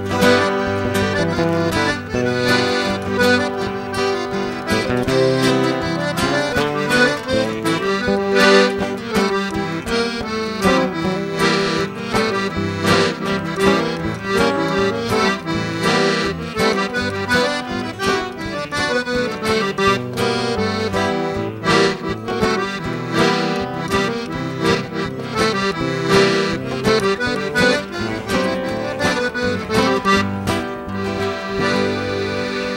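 Piano accordion playing a lively instrumental northeastern Brazilian forró tune, with acoustic guitar accompaniment.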